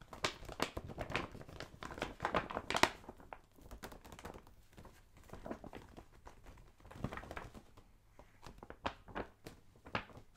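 A glossy gift bag being handled and rubbed by hand close to the microphone, crinkling and rustling. The crinkling is dense over the first three seconds, then thins to scattered rustles and light taps.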